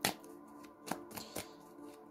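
A deck of tarot cards being shuffled by hand. There is a sharp slap of cards at the start, then a few quicker slaps about a second in.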